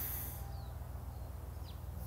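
Quiet outdoor background with two short, faint bird chirps, one about half a second in and another just past a second.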